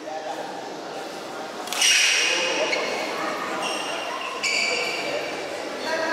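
A badminton rally in a large echoing hall: a sudden sharp sound about two seconds in and another near four and a half seconds, each followed by high-pitched squeaks, with voices around the court.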